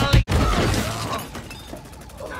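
Music cuts off abruptly a moment in. It is followed by a film sound-effect crash, like something shattering, that fades away over about a second.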